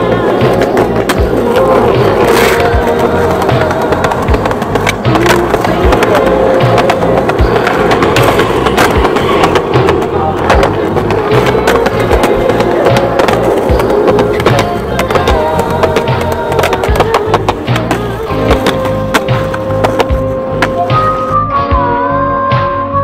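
Skateboard on concrete: wheels rolling, with repeated sharp clacks of the board popping and landing and grinding on a ledge, all under a loud music track that plays throughout.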